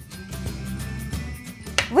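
Background music with steady low bass notes; a voice begins to speak at the very end.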